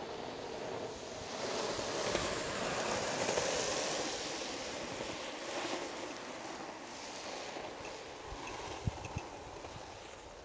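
Longboard wheels rolling on asphalt: a faint rushing noise that swells over the first few seconds and then slowly fades, with a few light ticks near the end.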